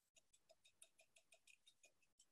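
Near silence with faint, rapid ticking, about seven a second: a wire whisk tapping and scraping round a mixing bowl as it stirs thick raw soap batter that has reached trace.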